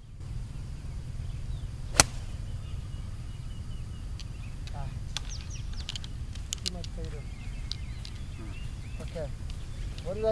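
An 8-iron striking a golf ball: one sharp crack about two seconds in, over a steady low rumble.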